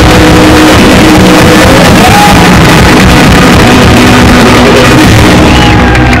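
Live band music with keyboards and singing, played loud through a concert sound system, with shouts from the crowd over it.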